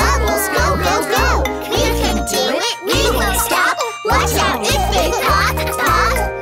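Children's nursery-rhyme song: cartoon child voices singing over a backing track with a steady bass beat.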